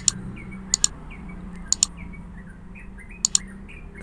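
Computer mouse clicking four times, each click a quick pair of ticks, over a low steady hum.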